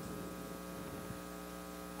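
Steady electrical mains hum picked up by the microphone and sound system: a low, even buzz with many overtones and no change through the pause.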